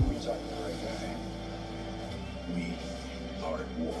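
A movie trailer's soundtrack playing from a TV and picked up across the room: a steady low music drone with brief snatches of dialogue.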